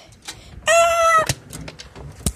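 A child's voice giving one short, high, steady meow-like cry for a toy cat, about half a second long. A sharp knock from handling cuts it off, and a few faint ticks follow.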